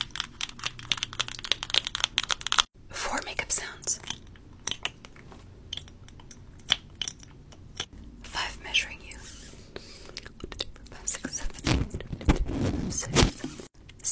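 Rapid tapping of long acrylic fingernails on a sticker sheet held close to a microphone, stopping abruptly about three seconds in. A run of scattered close-up handling sounds follows, and near the end loud rubbing and crinkling right against the microphone with low thumps.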